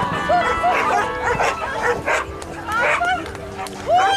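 A dog barking in a quick run of short barks, several close together in the first second and a few more later on.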